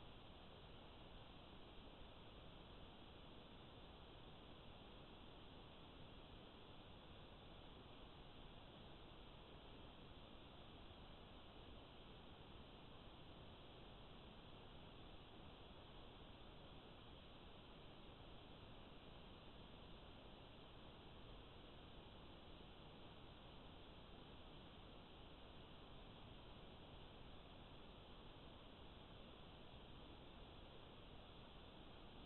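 Near silence: a faint, steady hiss.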